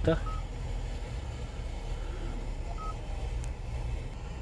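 Two short single-pitch beeps from a Kia Carens touchscreen head unit as it is pressed, one just after the start and one about three seconds in, over a steady low hum.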